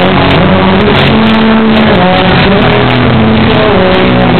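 Rock band playing live with acoustic and electric guitars, very loud, with held notes over a dense wash of sound.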